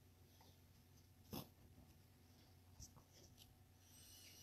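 Near silence: room tone with a faint low hum, broken by one short, faint click about a second and a half in and a smaller tick near the end.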